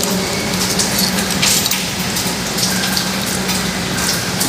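Water running steadily from a tap into a sink, with some splashing as a wet bag is handled in it.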